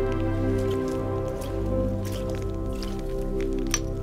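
Film background music: sustained notes held over a low steady drone, shifting slowly from one chord to the next. There are a few faint clicks, and one sharp click near the end.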